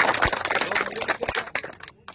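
Crowd applauding: a dense patter of many hand claps that dies away near the end.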